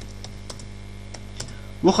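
Computer keyboard typing: a few scattered key presses over a steady low hum.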